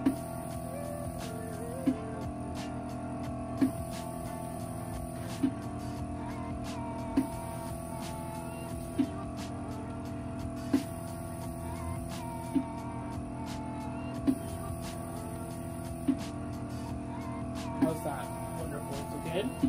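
Vacuum-therapy cupping machine running with a steady pump hum, and a short pulse about every two seconds as its suction cycles on the two buttock cups.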